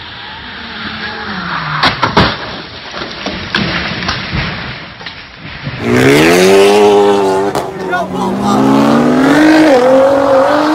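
A car engine with falling pitch and a few sharp knocks about two seconds in. After a cut near six seconds, a sports car engine revs hard, its pitch climbing steeply as it accelerates away, with spectators' voices.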